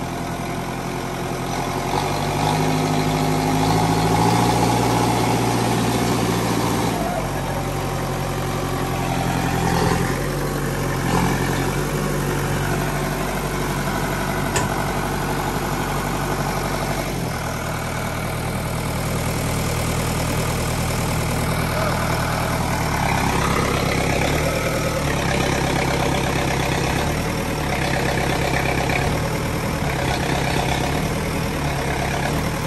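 Diesel engine of a LiuGong backhoe loader running as the machine works, its note stepping up and down several times as it takes load, with a few sharp knocks.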